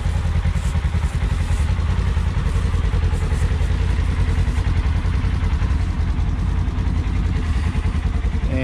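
Polaris RZR S 1000 side-by-side's twin-cylinder engine idling steadily.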